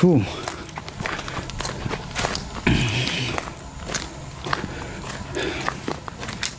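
Footsteps of a person walking on a wet, sandy dirt trail, at about two steps a second.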